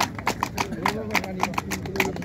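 Hand clapping: a run of quick sharp claps, several a second and unevenly spaced, with voices talking underneath.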